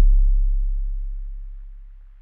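A deep electronic bass note holding steady in pitch and fading out smoothly: the last note of the song dying away.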